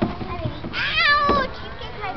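A child's high-pitched squeal, wavering in pitch and lasting under a second, about three-quarters of a second in. A few dull thumps come before and during it.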